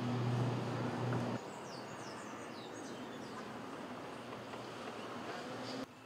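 Street ambience: a steady low engine hum, like traffic, that cuts off abruptly about a second and a half in, leaving a quieter hush with a run of quick, high, falling chirps from small birds.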